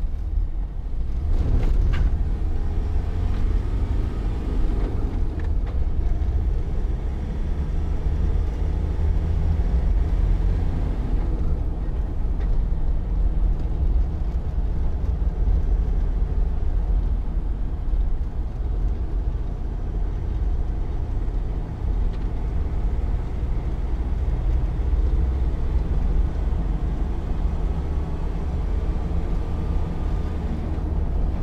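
Land Rover Defender 90's 2.2-litre four-cylinder turbo-diesel engine running steadily while the vehicle is driven, with a low, even drone of engine and road noise.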